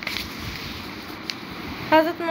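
A vehicle horn sounds with a sudden, steady-pitched honk just before the end, over a low hiss. Earlier there is faint paper handling from a textbook being moved, with a single click.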